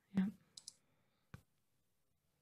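A few short, quiet clicks: a quick pair of light, high clicks, then a single sharper click.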